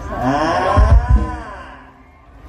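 A long drawn-out vocal cheer that rises and then falls in pitch over about a second and a half, with a few low thumps about a second in, before fading out.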